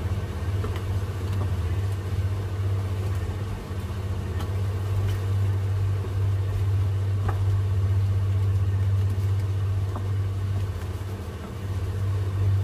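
Steady low hum, with a few light knocks of a wooden spatula against the wok as the crab curry is stirred.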